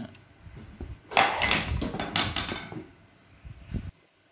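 Steel hand tools clanking and rattling against each other as they are handled: a pipe wrench is put aside and a steel bar clamp picked up, the clatter loudest between about one and three seconds in, with a short knock near the end.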